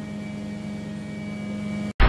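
Steady mechanical hum at a single unchanging pitch, like a running motor, cutting off abruptly near the end.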